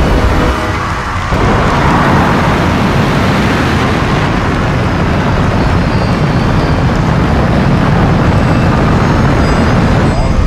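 Loud, steady rocket-launch roar, a deep rumble with hiss on top. It swells in about a second and a half in, after a brief lull as music drops away.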